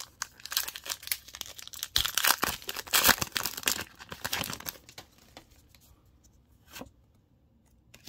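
Foil Pokémon TCG booster pack torn open and crinkled by hand: a dense run of crackling tearing for about four seconds, loudest in the middle, then it goes quiet as the cards are slid out, with one faint tap near the end.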